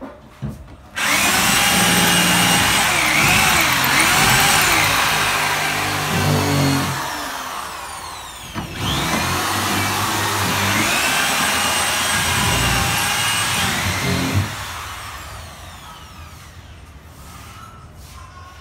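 Electric power drill boring into a wooden wall panel in two long runs, the motor pitch wavering under load, as injection holes are drilled for termite treatment.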